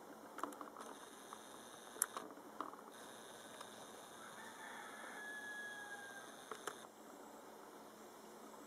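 Camcorder zoom motor whining steadily for several seconds as the lens zooms out, stopping suddenly near the end, with soft handling clicks before it starts and as it stops. A faint drawn-out tone sounds partway through.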